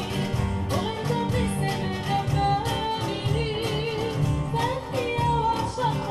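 A woman singing a wavering, ornamented melody into a microphone, accompanied by a plucked acoustic guitar.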